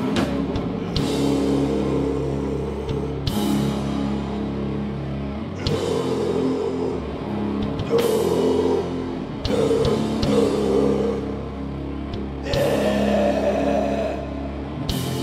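Live heavy metal band playing a slow song: distorted electric guitars and bass guitar hold long, low chords over a drum kit, with a cymbal crash every two to three seconds.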